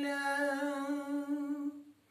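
A man's unaccompanied voice holding one long, steady note at the end of a line of a Turkish ilahi, sung without instruments; the note fades out near the end.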